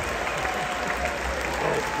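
Large arena audience applauding steadily.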